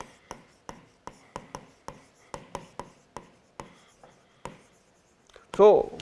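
Pen stylus ticking and scratching on the glass of an interactive display board while handwriting a word: a run of short, sharp ticks, about three or four a second, that stops about four and a half seconds in.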